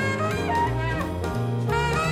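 Alto saxophone playing a jazz melody: a run of short notes that lands on a long held note near the end. Upright bass, piano and drums accompany it.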